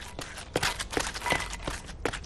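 Cartoon footsteps: a quick, light run of steps as a character hurries off.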